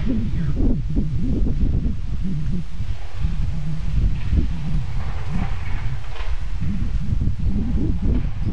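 Wind buffeting the camera microphone outdoors, a loud, steady low rumble.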